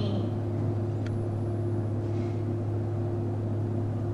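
A steady low electrical or machinery hum, with a faint tick about a second in.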